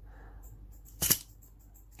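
A Mini 4WD model car set down on a rubber work mat, with one short sharp tap about a second in against a quiet room.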